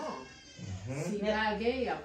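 Speech: a person talking, with a drawn-out, rising and falling voice in the second half.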